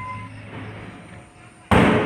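A bell-like ring dying away, then near the end a sudden loud percussive hit that slowly fades.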